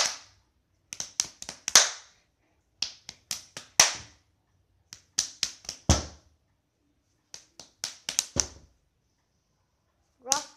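Hands clapping and slapping in a two-person hand-clapping game: quick runs of four or five sharp claps, each run about a second long, repeated four times with short pauses between.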